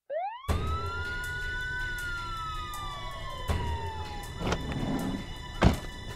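Police siren giving one long wail: it rises quickly, peaks about two seconds in and slowly falls away. A few knocks follow, the loudest a thud near the end.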